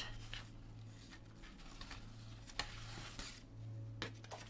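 Faint handling sounds at a desk: a few light taps and rustles over a steady low hum.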